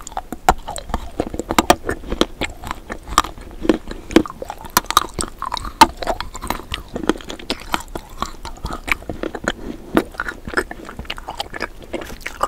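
A person chewing a bite of an edible spoon close to the microphone, with many quick, irregular sharp clicks.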